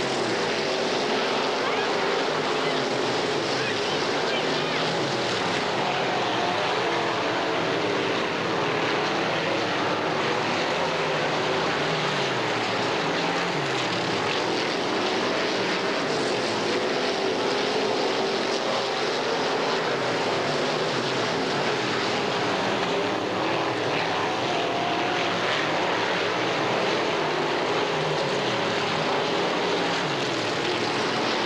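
Several dirt-track race car engines running together as the cars lap the oval. The overlapping engine notes keep rising and falling in pitch, with no let-up in loudness.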